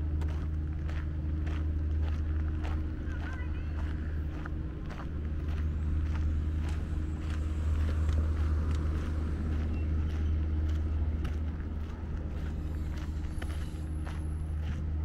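Footsteps crunching on a gravel path at a walking pace of about two steps a second, over a steady low hum.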